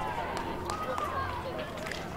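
Distant, indistinct voices of players and onlookers talking and calling, over a steady low hum of outdoor background noise.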